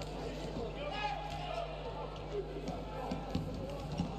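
Live sound of a floorball game in an arena: a player's call about a second in and a few short knocks of sticks and ball on the court, over a steady arena hum.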